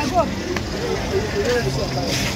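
Busy street ambience: people talking all around and a minibus engine running close by, with a steady low hum near the end.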